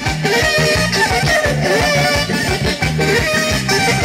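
Live wedding band playing dance music: electric guitar leading over bass and a steady beat.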